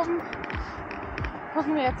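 A woman's voice speaking briefly at the start and again near the end. Between her words there is a steady rushing background of road traffic and the river below.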